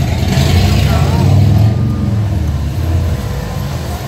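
A motor vehicle's engine running close by in street traffic, a low hum that swells to its loudest about a second and a half in and then eases off just after three seconds.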